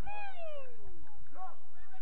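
A person's long shout across an open field, falling steadily in pitch over about a second. Shorter calls from other voices come before and after it.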